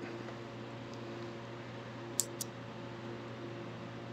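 Two quick snips of hair-cutting scissors about halfway through, a fifth of a second apart, as the scissors point cut into the fringe, over a steady low room hum.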